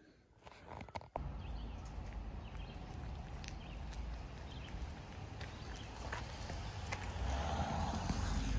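Outdoor background noise: a steady low rumble and hiss with scattered faint clicks, starting about a second in after a brief near-silence and growing slightly louder near the end.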